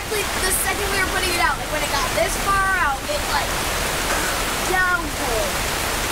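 Heavy rain pouring down steadily on a campsite, a dense, even rush of water falling on the camper, its awning and wet pavement.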